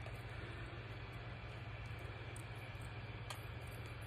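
Room tone: a steady low hum under an even hiss, with one faint click about three seconds in.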